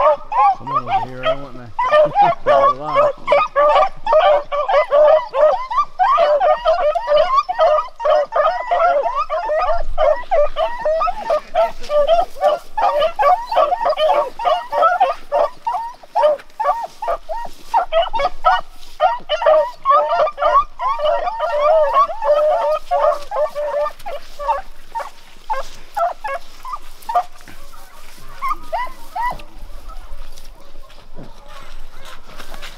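A pack of beagles giving tongue on a rabbit track: many overlapping quick, high barks and bays in a continuous chorus that thins out somewhat in the last few seconds.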